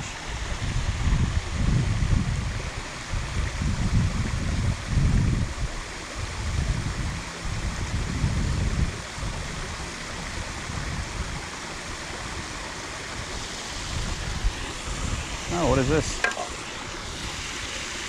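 Steady rushing of flowing creek water, with low uneven rumbles of wind buffeting the microphone through the first half. A brief voice sounds near the end.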